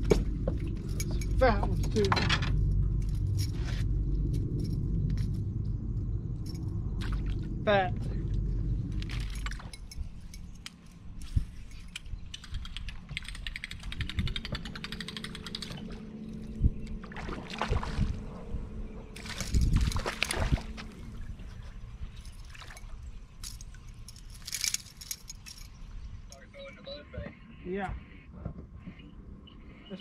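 Mixed sounds in the boat: a low rumbling noise for the first ten seconds, then scattered clicks and a steady low hum. Near the end a buzzbait is retrieved across the surface, its spinning blade clacking and squeaking, very loud for a buzzbait.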